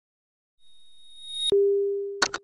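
Logo-intro sound effect: a thin high tone swells louder for about a second, then a sharp hit comes about one and a half seconds in, followed by a steady low tone that slowly fades.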